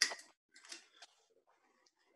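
Steel-tip darts being pulled out of a bristle dartboard: one sharp click right at the start, then a few faint handling clicks within the first second, and little else.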